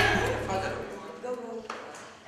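Guitar music fading out in the first second, leaving faint, indistinct chatter of a group of people in a hall, with one sharp click near the end.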